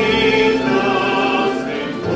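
Male singer holding a long sung note over tamburica orchestra accompaniment, dipping slightly in loudness near the end.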